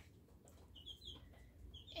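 Near silence: room tone, with a few faint, short high chirps about a second in and again near the end.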